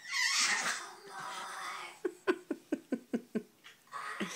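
A person's voice: a breathy sound at the start, then about two seconds in a quick run of about eight short syllables, each falling in pitch, like giggling or a playful animal voice for a puppet.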